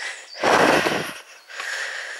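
A person's breathy exhale close to the microphone, about half a second in and lasting under a second, followed by quieter breathing.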